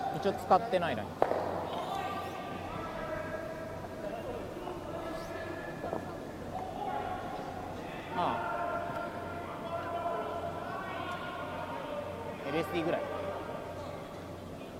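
Curlers' voices calling and talking out on the ice, heard indistinctly in the echoing rink hall, with a single sharp knock about a second in.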